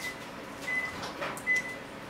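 Steamed crab shells being cracked and picked apart by hand, a few small sharp crackles and clicks.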